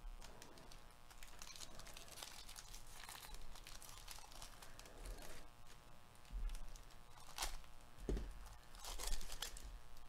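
Foil-wrapped baseball card pack being torn open and crinkled by gloved hands, then the stack of cards slid out: a run of tearing and crinkling rustles, loudest in bursts near the start and in the last few seconds.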